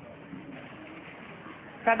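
A faint, low cooing bird call in the background during a pause in a man's talk; his voice comes back near the end.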